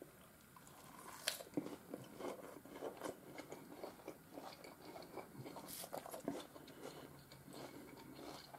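A person chewing a mouthful of leafy salad with onion and avocado. The crunching is faint and irregular and goes on for several seconds.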